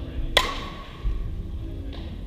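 A metal baseball bat striking a ball once, about a third of a second in: a sharp crack with a short ringing ping after it. Music plays in the background.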